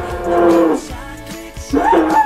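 A voice holding a long drawn-out note for most of the first second, then beginning another long note near the end, over background music.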